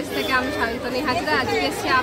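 A woman speaking to the camera, with a crowd chattering behind her.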